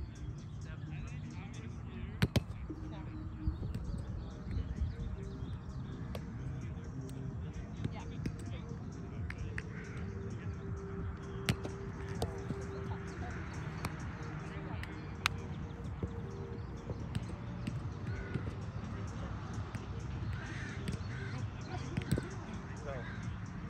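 Roundnet rally: a few sharp slaps of hands striking the ball, the loudest about two seconds in and others spread through the rally, over a steady low background rumble.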